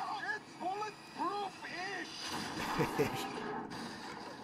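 A man chuckling: four short laughs about half a second apart, each rising and falling in pitch.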